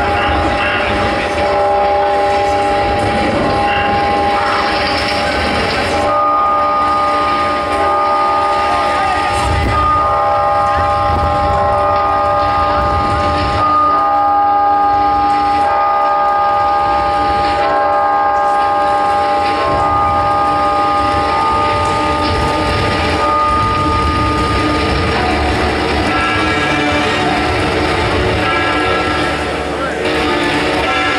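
Keyboard synthesizer playing slow, held chords that change every couple of seconds over a low rumble, heard live through a festival PA. Near the end, a quicker line of higher notes comes in.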